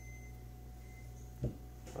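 Steady low background hum of a small room during a pause in talk, with one short soft thump about one and a half seconds in.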